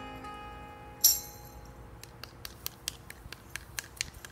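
The last chord of an acoustic guitar ringing out and fading, with a single tambourine shake about a second in. From about two seconds in come scattered light handclaps, a few a second, from a small audience.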